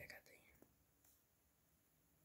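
Near silence, with a faint whispered voice in the first half second that then fades to room tone.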